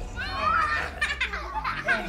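Young children laughing and squealing at play, their high voices gliding up and down.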